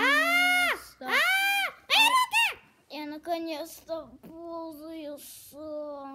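A child's high voice singing and vocalizing without clear words: long held notes that swoop up and down in the first couple of seconds, then shorter, speech-like sounds.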